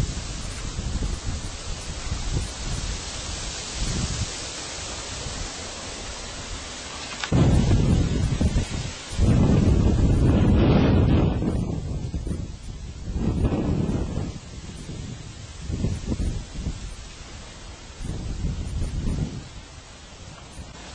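Wind buffeting an outdoor handheld camera's microphone: a rumbling rush that comes in gusts, strongest and loudest from about seven to twelve seconds in, then weaker surges later.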